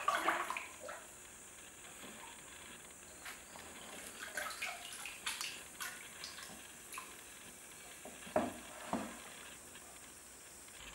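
Liquid glaze sloshing in a plastic bucket as a wooden stick stirs it and a bisque-fired bowl is dipped in and lifted out, with small drips falling back into the bucket. Two louder splashes come near the end.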